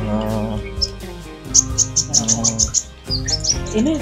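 A small caged songbird, a sunbird of the kind sold as 'kolibri ninja', chirping: a quick run of about eight short, high chirps about a second and a half in, and a few more chirps near the end.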